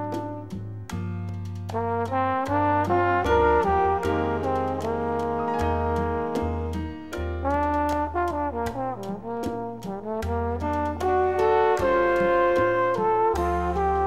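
Latin jazz instrumental: a horn section of trumpet and trombone plays the melody over a walking bass line and steady percussion hits.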